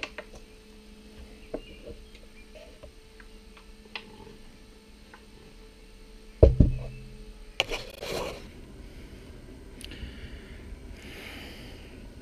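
Handling of a homemade wooden six-bottle carrier loaded with beer bottles: a few light knocks, then one loud thump about six and a half seconds in as it is lifted or set down, followed by rustling.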